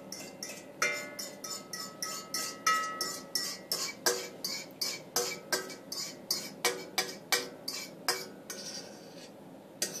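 Spatula scraping the inside of a stainless steel mixing bowl in quick strokes, about three a second, the bowl ringing briefly after many of them, as runny egg-pie filling is emptied into the crust.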